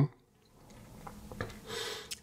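Faint rubbing of hands handling a smartphone, a soft scratchy hiss that grows louder near the end after a brief moment of near silence.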